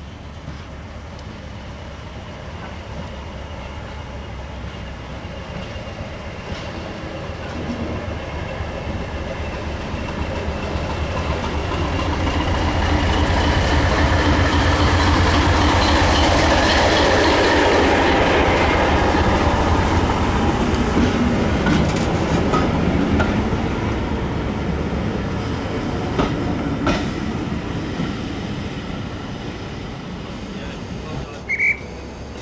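British Railways Class 207 diesel-electric multiple unit running past: its diesel engine and wheels on the rails grow louder to a peak about halfway through, then fade as it moves away.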